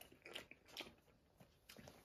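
Faint chewing of a pan-fried sticky bean bun with a crisp crust: a few soft, irregular clicks.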